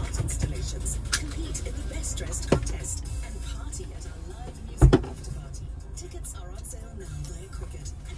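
Inside a stationary car: a steady low rumble with a radio playing faint music and voices. There are a couple of small clicks, and a louder single thump about five seconds in.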